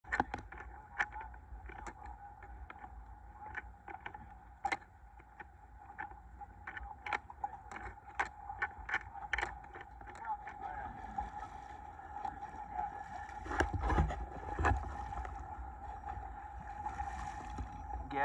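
A boat on choppy open water: a steady engine whine over a low rumble, with irregular sharp knocks and a louder gust of wind on the microphone about two-thirds of the way in.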